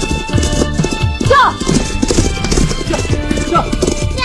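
Hoofbeats of several horses galloping, a dense run of irregular thuds. Two short falling cries come through, one about a second in and one near the end.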